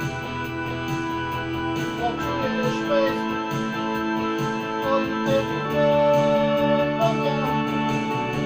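Electronic arranger keyboard playing a song: steady, held organ-like chords with a wavering melody line over them.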